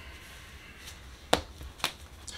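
A tarot card being laid down on the table: two sharp snapping taps about half a second apart, past the middle, over a faint low hum.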